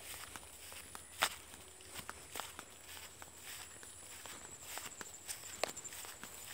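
Footsteps crunching through dry sugarcane leaf litter and grass, with irregular crackles and rustles of leaves brushed aside. One sharper crackle comes about a second in.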